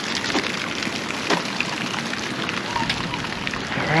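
Rain pattering steadily, with many scattered sharp ticks of single drops.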